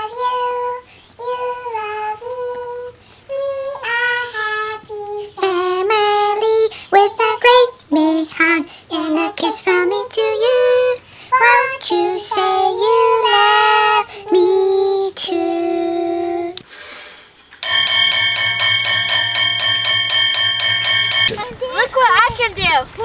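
A child's high voice singing a melody in short phrases, with no instruments behind it. Near the end the singing gives way to a few seconds of a steady buzzing chord with a fast flutter.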